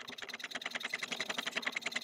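Rapid, even clicking from a fishing-line abrasion test, as the line is drawn back and forth over a notched metal edge.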